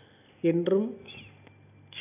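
A narrator's voice speaking one short word, about half a second long, between two pauses in the storytelling.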